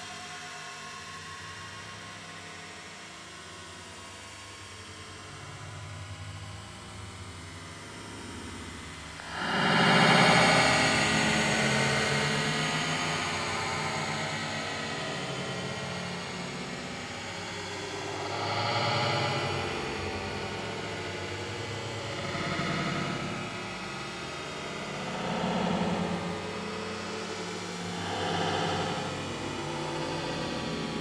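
Slowed-down recording of an APS Thunder B airsoft sound grenade going off: a drawn-out, low rumbling blast that swells up about nine seconds in and fades slowly. Several slower swells follow.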